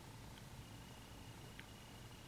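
Near silence: room tone with a faint low hum and two tiny ticks.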